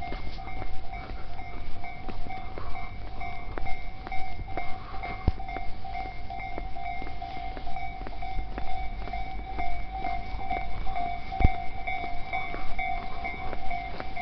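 Footsteps on a paved street, heard as irregular sharp taps, under a steady high tone that wavers slightly.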